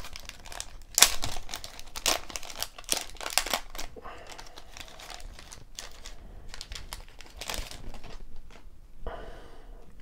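A 1990 Score baseball card wax pack being torn open by hand, its wrapper crinkling and tearing in sharp crackles. The crackles are loudest and densest in the first few seconds, then turn to softer rustling.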